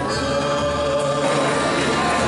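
A large group of amateur voices singing together in unison, holding long notes.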